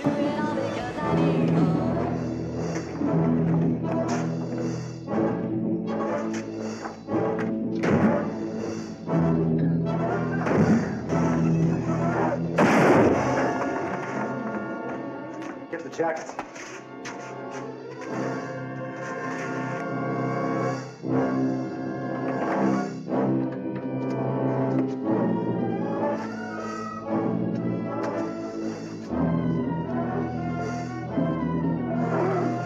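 Dramatic orchestral film score with brass playing sustained, shifting chords, and a sudden loud crash about thirteen seconds in.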